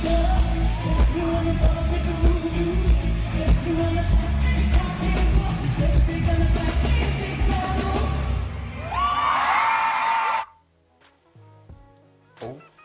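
Live concert recording of a pop song: a female singer over a heavy bass beat. Near the end the beat drops out, leaving higher voices for a couple of seconds. The sound then cuts off suddenly, about ten and a half seconds in.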